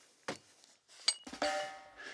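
Metal dumbbells knocked and clinked together as they are picked up off the floor: a soft knock, then about a second in a sharp clink that rings briefly. Steady held musical tones come in near the end.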